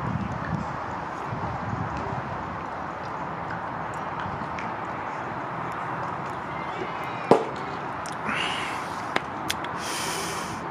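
A man gulping down a drink over a steady rushing background noise, with a sharp click about seven seconds in.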